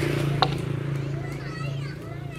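A single sharp chop of a hand-held blade into a wooden log being hewn, about half a second in, over a steady low hum; children's high voices call out near the end.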